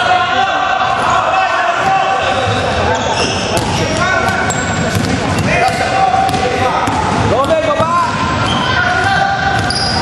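A basketball game on a hardwood gym floor: the ball bouncing during dribbling, with sneakers squeaking in short held tones and players' voices calling out.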